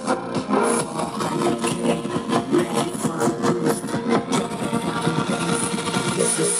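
Music with a steady beat played through a BlitzWolf BW-WA1 portable Bluetooth speaker during a bass test.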